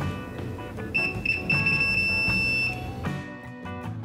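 A Proster VC97 digital multimeter's continuity buzzer beeps, a single high tone that stutters briefly and then holds steady for about a second and a half before cutting off. The beep signals a closed path between the probes on the board. Background music runs underneath.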